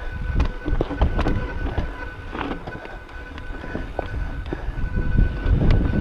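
Mountain bike rolling over rocky trail: tyres rumbling on rock, with scattered knocks and rattles from the bike over the bumps, and wind buffeting the chest-mounted camera's microphone.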